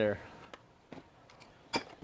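A few light clicks and a sharper knock near the end: a cordless band saw being set down on a steel benchtop and a bench vise being handled.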